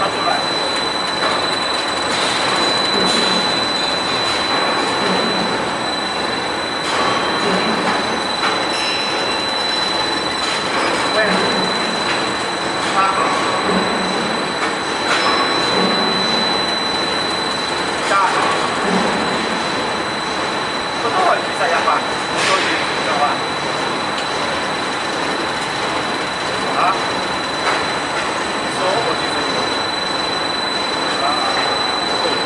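Steady mechanical running noise with a constant high-pitched whine, with faint voices in the background.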